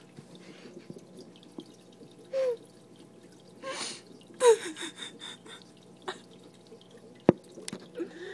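A woman's stifled laughs and breathy gasps in a few short bursts, the strongest about halfway through. A faint steady water trickle from a fish tank runs underneath, and a single sharp click comes near the end.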